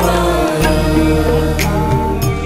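Hindu devotional music with a chant-like sung vocal line.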